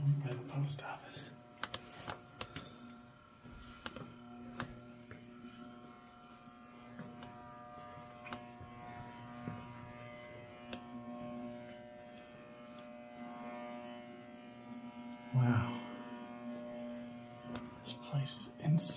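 A steady droning hum made of several fixed tones, with scattered knocks and clicks in the first few seconds and a brief burst of voice about fifteen seconds in.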